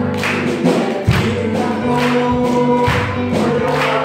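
Women's choir singing a Korean gospel praise song together, with hand claps keeping the beat.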